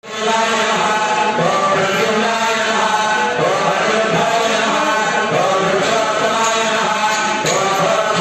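Priests chanting Vedic mantras in a steady, continuous recitation, after a momentary dropout at the very start.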